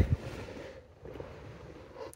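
Faint rustling handling noise as a hand-held phone camera is moved about, strongest in the first half-second and then settling to a low hiss.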